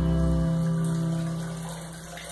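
Music: the closing guitar chord of the accompaniment rings out and fades away, its low bass note stopping about half a second in.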